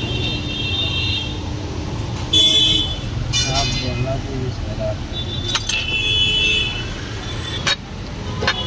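Road traffic running behind, with several short vehicle horn toots; the loudest comes about two and a half seconds in and a longer one a little after the middle. A few sharp clicks near the end.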